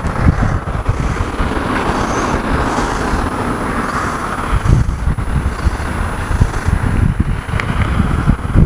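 Road traffic passing on a street, with a steady tyre-and-engine hiss that swells through the middle. Gusty wind rumbles on the microphone underneath.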